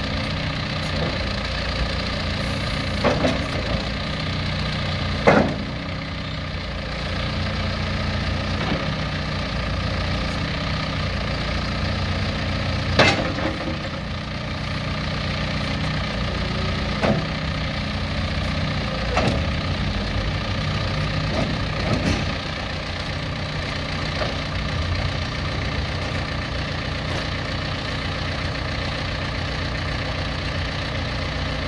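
John Deere 410L backhoe loader's diesel engine running steadily, with several sharp clunks as the loader arms and bucket are worked; the loudest come about five and thirteen seconds in.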